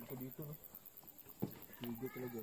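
Faint talking voices in the background, with a single short knock about one and a half seconds in.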